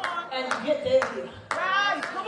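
Hand claps, about two a second, over a voice calling out.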